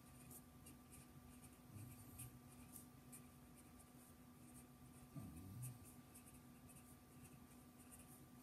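Faint handwriting: short, light scratching strokes of writing out a phrase, against near silence.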